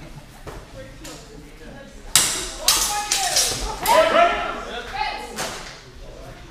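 A longsword fencing exchange: quiet at first, then from about two seconds in a flurry of sharp clacks of sword blows, mixed with loud shouting, lasting about three seconds.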